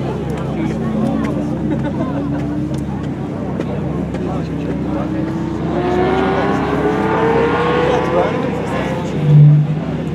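Ferrari 512 TR's flat-twelve engine accelerating along the track past the listener, its note climbing steadily and growing loudest as the car comes closest, then dropping away as it goes off. Spectators' voices sound faintly in the background, and a brief loud low sound comes just before the end.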